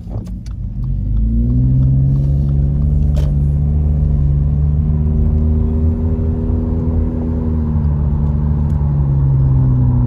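Car engine and road noise heard from inside the cabin as the car pulls away from a stop. The engine note rises over the first couple of seconds, then holds steady at a cruising pace.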